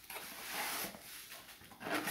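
Cardboard shipping box being opened by hand: the flaps scrape and rustle as they are pulled apart, loudest in the first second, then softer rustling as a hand reaches in among the contents.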